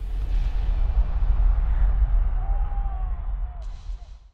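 A deep cinematic boom that sets in suddenly and carries on as a sustained low rumble. A faint gliding whistle-like tone rides over it in the second half, and the rumble fades out at the end. This is a logo-sting sound effect.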